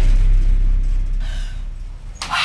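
Deep, low rumble of an elevator car starting to descend after its doors have shut, loudest at first and slowly fading.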